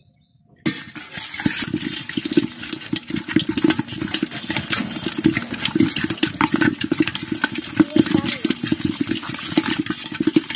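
Salted climbing perch (koi fish) thrashing in a pot: a loud, dense, irregular clatter of slaps and knocks against the pot that starts about half a second in.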